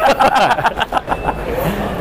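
Two men laughing heartily together, in quick choppy bursts, over a busy hall background.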